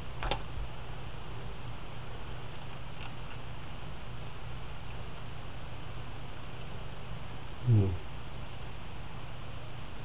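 Steady low hum and hiss of room tone, with a faint click shortly after the start and another about three seconds in. A man's voice gives one brief hum about three-quarters of the way through.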